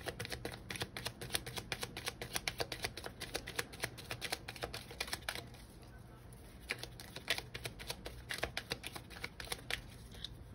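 A deck of oracle cards being shuffled by hand: quick, dense card clicks and flicks, thinning out for a couple of seconds past the middle, then picking up again near the end.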